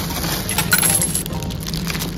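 Thin plastic produce bag of chili peppers crinkling as it is grabbed and lifted from a crate, loudest from about half a second to a second in, over background music.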